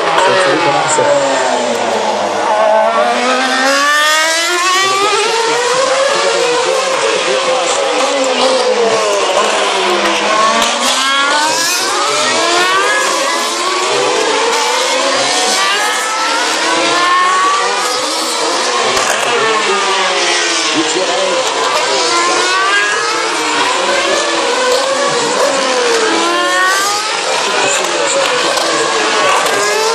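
Formula One cars' 2.4-litre V8 engines passing one after another at high revs. Each car's pitch falls as it brakes and downshifts into the corner, then climbs again as it accelerates away, so the sweeps overlap and repeat.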